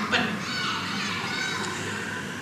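Indistinct background voices, children's among them, in a room. A man's voice tails off just after the start.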